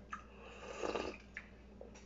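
A person slurping food from a bowl held to the mouth: a short click, then one rough slurp swelling to its loudest about a second in, and another light click after it.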